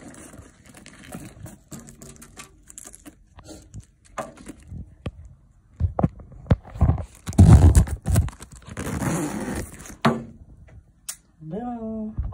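Handling noise from a canvas tote bag: the fabric and contents rustle and knock, with loud bumps and rubbing on the microphone in the middle, and the bag's zipper is drawn shut.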